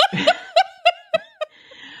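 A woman laughing in a run of short, quick laughs that fade over about a second and a half, then a soft breath.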